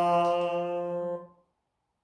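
A voice singing solfège unaccompanied, holding the exercise's final note, fa (F), steadily on one pitch. The note ends about a second and a quarter in.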